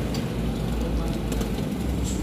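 A steady low rumble of a vehicle, with a few light clicks as hands work on metal parts in a bus engine bay.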